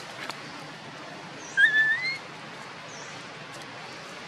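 A baby macaque gives one short rising, whistle-like cry about one and a half seconds in, a call for its mother. Faint short high chirps sound now and then.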